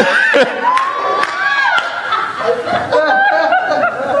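A man's voice laughing and singing in a high, held tone, with laughter from a small group of listeners.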